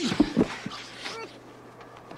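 Muffled whimpering and breathy struggling sounds from a forced kiss, with a few sharp smacking sounds in the first half second and a short rising whimper just after a second in.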